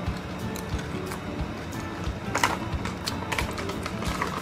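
Crunching of a honey butter potato chip as it is bitten and chewed: a scatter of short, sharp crunches over quiet background music.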